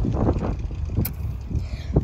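Wind buffeting a phone's microphone while riding a bicycle: an uneven low rumble, with a sharp click about a second in.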